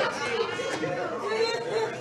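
Murmured voices of a congregation in a hall, several people talking quietly in response.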